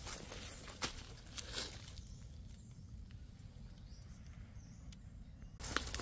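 Footsteps and rustling through dry grass and leaf litter, with a few light clicks and knocks from a wire cage trap being carried; the sound dies down to a low hush after about two seconds.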